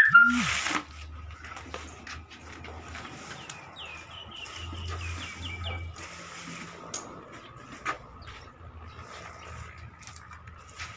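A bird calling: a quick run of short descending chirps about four to six seconds in, over a faint steady high tone and soft background noise, with two short clicks later.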